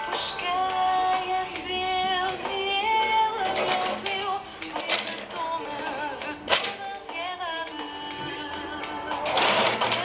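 A song with a woman singing, overlaid by several sharp knocks or clatters close to the microphone. The loudest come about five and six and a half seconds in, with a quick run of them near the end.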